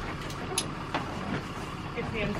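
A few light knocks and clatters inside a metal horse trailer, over a steady low rumble.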